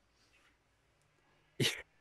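A single short, sharp burst of breath and voice from a person, about one and a half seconds in, after a near-quiet pause.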